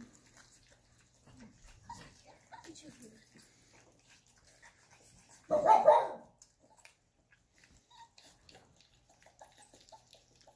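A dog barks once, short and loud, about five and a half seconds in. Around it are faint scattered clicks from Bull Terrier puppies eating soft food out of stainless-steel bowls.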